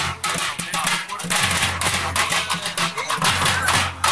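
A drum troupe playing dhol and other percussion in a fast, dense rhythm of beats, with a brief dip about a second in.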